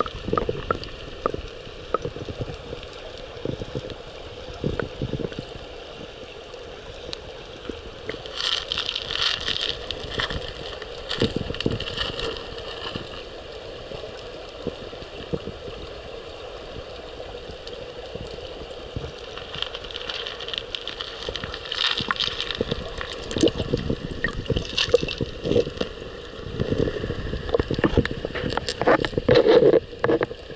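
Mountain-river current heard from underwater: a muffled, continuous gurgling rush with many irregular clicks and knocks, swelling louder a few times.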